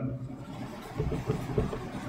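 Marker pen writing on a whiteboard: faint short strokes about a second in, over a low steady room hum.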